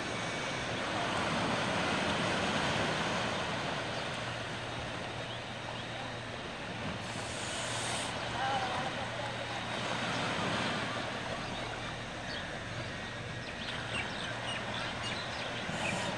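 Small waves breaking and washing up a sandy beach: a steady rushing that swells and eases every few seconds.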